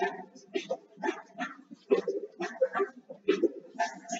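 A voice vocalising continuously in quick, choppy syllables, speech-like but with no words that can be made out.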